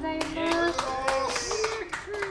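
The final acoustic guitar chord rings out and fades while the audience claps, with voices heard over the applause.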